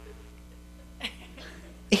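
A pause with a low steady hum, broken about a second in by a single short cough. A man's voice begins a word right at the end.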